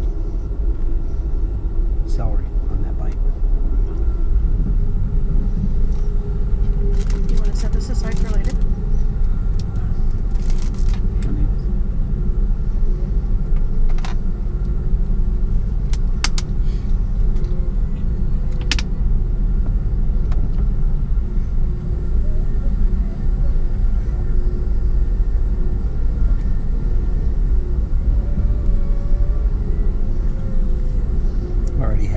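Steady low rumble of an Amtrak Empire Builder passenger car running on the rails, heard from inside the car, with scattered clicks and rattles.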